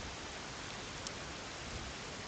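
Steady background hiss with no speech, the noise floor of an open microphone during a computer screen recording. One short, sharp click about a second in.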